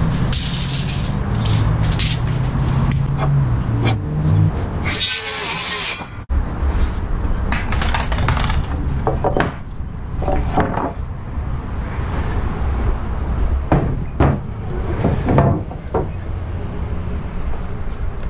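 Pine 2x6 boards being handled on brick pavers: scattered knocks, clatters and scrapes of lumber. A loud rushing noise lasts about a second around five seconds in, and a low steady hum runs under the first four seconds.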